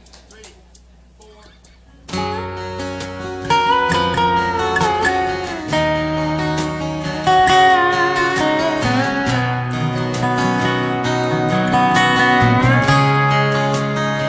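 Live country song intro on guitars. After about two seconds of low sound, strummed acoustic guitar chords come in, with a lead line that slides between notes over them.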